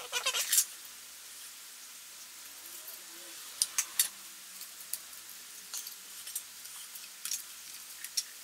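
Small wooden model-ship parts and a wooden glue applicator stick being handled while wood glue is applied, giving a few sharp clicks and taps over a steady hiss, the loudest two about three and a half and four seconds in.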